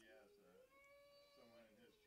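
Faint voices in the room, picked up off the microphone, with a higher, drawn-out call that glides up about half a second in and holds for about a second.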